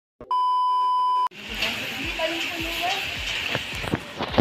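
A steady beep of about a second, the test tone that goes with TV colour bars, cutting off abruptly. It gives way to the crowd chatter of a busy market.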